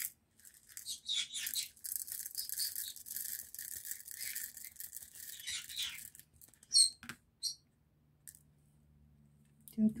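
Small resin diamond-painting drills rattling and sliding across a plastic tray as they are tipped and poured, a dense steady rattle for about six seconds, then a few sharp clicks as stray drills drop.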